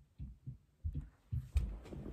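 A run of low, dull thumps, about two or three a second and often in close pairs, with a rustle of movement near the end.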